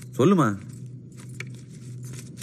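A short spoken word, then a quiet stretch with a low steady hum and a few faint light clicks.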